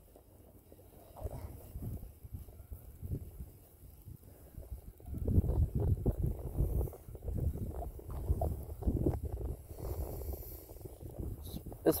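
Uneven low rumble of wind buffeting the microphone, faint at first and louder from about five seconds in.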